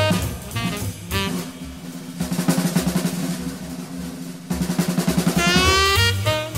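Swing jazz drum break: the horns drop out and the drummer plays rapid snare rolls over the kit, then a horn comes back in near the end with a rising phrase.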